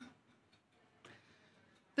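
Near silence, with a faint tick about a second in.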